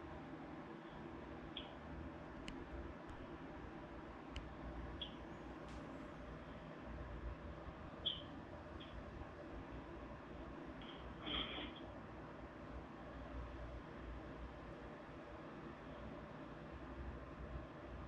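Faint steady background hum with a few soft clicks and several short, faint high blips scattered through it.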